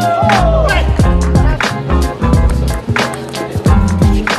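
Background music with a steady beat and a melodic lead line.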